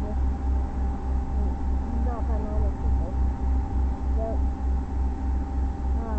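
A low machine-like hum throbbing about three times a second, with a steady thin tone above it. A few faint, short cat meows rise and fall about two seconds in and again past four seconds.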